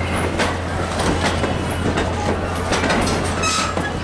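Wooden passenger coaches rolling past close by, their steel wheels clicking and clattering irregularly over the rail joints under a steady rumble.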